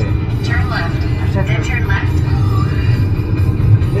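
Rock music with vocals playing on the car radio, heard inside the moving car's cabin over a steady low rumble of road and engine noise.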